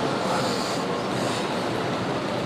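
Steady, even hiss-like background noise with no voice in it, in a short pause between recited phrases.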